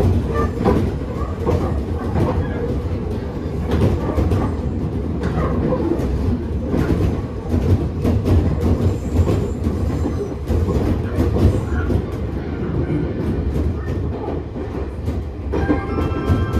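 Nagano Electric Railway 8500 series (ex-Tokyu 8500) electric train heard from inside the passenger car while running: a steady low rumble of wheels and running gear, with scattered clicks as the wheels cross rail joints.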